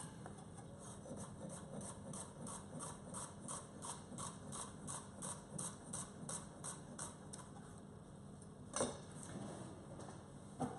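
Chef's knife slicing a red onion thinly on a wooden chopping board: quiet, even taps of the blade on the board, about four a second, then the slicing stops and one louder knock follows near the end.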